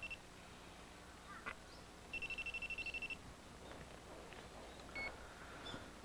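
Electronic telephone ringing: a high, rapidly trilling tone. The tail of one ring ends at the start, and a full ring of about a second comes about two seconds in.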